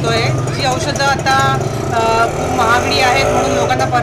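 A woman talking over street traffic, with a motor vehicle's engine running steadily nearby. About three seconds in, the engine note rises as it speeds up.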